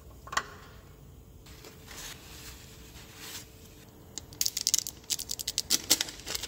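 Gloved hands unscrewing and handling a car's spin-on oil filter: a sharp click about a third of a second in, then a quick run of small clicks and rustles over the last second and a half.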